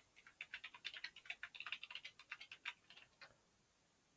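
Computer keyboard typing: a quick run of keystrokes, several a second, that stops a little after three seconds in.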